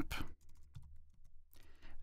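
Faint, scattered keystrokes on a computer keyboard, a few separate key clicks as a short terminal command is typed and entered.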